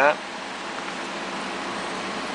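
Power-folding side mirror motor on a 2007 Cadillac Escalade, a steady whir as the mirror folds in.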